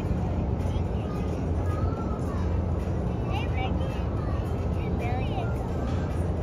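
A steady low rumble with faint, indistinct voices of people talking in the background.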